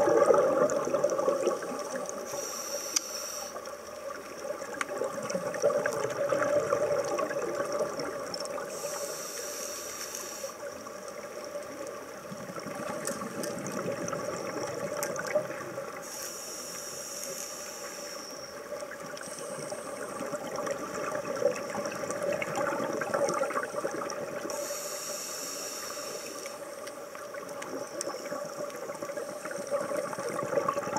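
Scuba regulator breathing heard underwater: four bubbling bursts of exhaled breath, about seven seconds apart, over a steady watery hiss.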